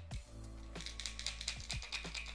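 Rattle balls inside an Eastfield Harakiri Superswimmer hard swimbait clicking quickly as the lure is shaken, starting about a second in. Background music plays underneath.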